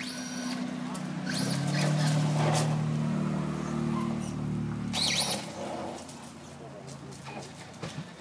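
Traxxas Stampede VXL electric RC monster truck with a Castle brushless motor driving on asphalt on oversized rubber tires. Its motor whine rises and falls with the throttle over a steady low hum that swells to its loudest in the middle, then drops away about five seconds in.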